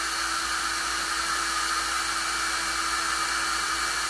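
Handheld hair dryer running steadily, blowing on a freshly painted box to dry the paint: an even rush of air with a constant motor hum.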